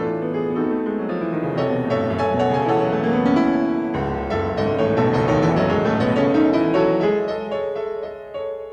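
Solo piano playing a fast, loud toccata passage of rapid repeated notes. Sweeping runs climb up the keyboard twice, with a deep bass note struck about halfway, and the playing eases in loudness near the end.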